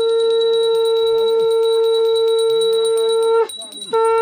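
A conch shell (shankh) blown in one long steady note of about three and a half seconds, with a short break for breath and a second blast starting near the end. A quick, even high-pitched rattle of small ringing strikes runs alongside it.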